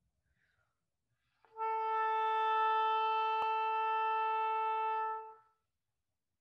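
An oboe playing one steady, sustained note that starts about a second and a half in and is held for about four seconds before it stops.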